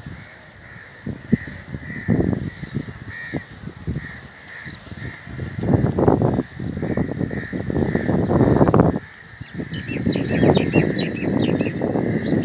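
Crows cawing again and again, with small birds chirping in short high notes, more of them near the end. Bursts of low rumbling noise on the microphone, the loudest sound, fill the second half.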